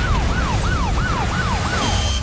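Police car siren sounding in quick falling sweeps, about three a second, over a low rumble.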